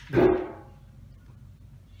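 A single short, loud bark-like cry near the start, lasting about a third of a second, followed by quiet.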